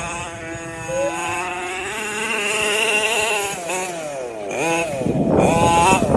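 HPI Baja 5B RC buggy's small two-stroke petrol engine revving, its note rising and falling with the throttle, with a deep dip and a quick climb back up about four seconds in.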